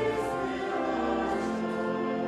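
A congregation singing a hymn together in long, held notes.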